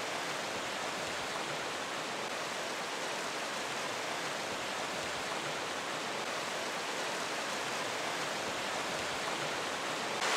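Mountain snowmelt stream rushing over rocks, a steady roar of water.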